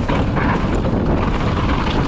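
Loud, steady rumble of wind buffeting a helmet-mounted camera microphone, mixed with mountain-bike tyres rolling over leaf-covered dirt on a fast descent.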